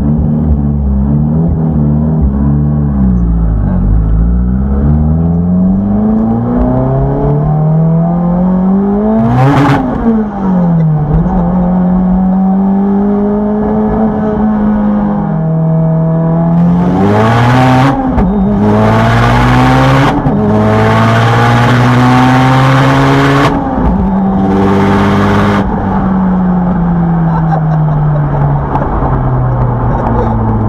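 Turbocharged four-cylinder engine of a 900 hp Mitsubishi Lancer Evolution, heard from inside the cabin on a hard acceleration run. The revs climb in long sweeps with abrupt drops at the gear changes, with loud hissing bursts in the second half, and fall away slowly near the end.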